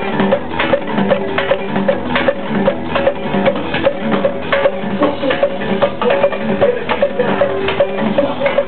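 Live band playing an instrumental passage: electric guitar and bass over drums and hand percussion, with a steady, evenly spaced knocking percussion rhythm. The sound is dull and lacks top end, as from a small camera's microphone in the audience.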